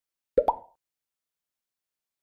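Two quick cartoon pop sound effects from an animated logo, about half a second in, each rising in pitch, the second pitched higher than the first.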